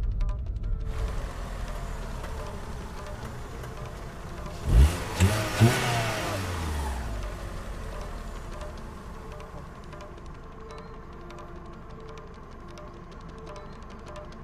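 Low background music, with a loud whooshing swell about five seconds in: its pitch rises through three sharp peaks, then falls away over the next two seconds.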